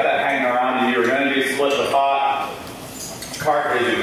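Speech only: a man talking into a microphone, with a brief pause about two and a half seconds in.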